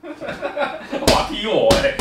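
Two sharp open-hand slaps on a person's leg, about a second in and near the end.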